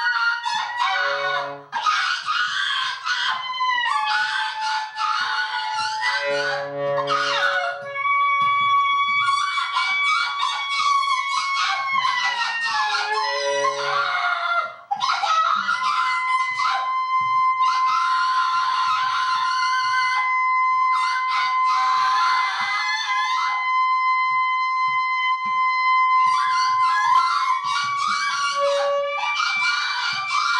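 Free-improvised noise music: a saxophone holding long, high, steady tones while a woman's shrill screaming through a microphone and scraped, clattering archtop guitar pile on in dense, jagged layers. One held tone runs for about ten seconds in the second half.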